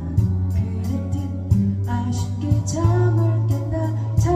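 A woman singing a Korean folk ballad live, accompanying herself on a capoed acoustic guitar with a steady strummed rhythm.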